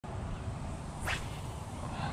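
A fishing rod swishing through the air on a cast: one quick whoosh, falling in pitch, about a second in, over a steady low rumble.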